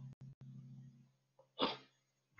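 A low steady hum that fades out about a second in, then a single short sneeze about one and a half seconds in.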